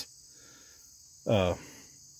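A steady high-pitched chirring of crickets, with one short spoken "uh" from a man about a second in.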